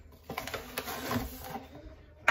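Granulated sugar poured from a plastic measuring cup into a metal flan pan: a soft, even hiss of grains with a few light clicks.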